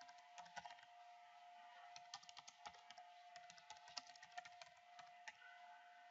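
Faint, irregular computer keyboard keystrokes as a short chart title is typed.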